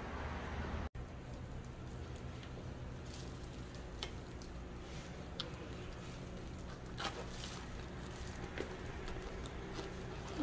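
Faint, scattered rustles and soft clicks of disposable plastic gloves handling a cluster of oyster mushrooms, over a steady low background hum.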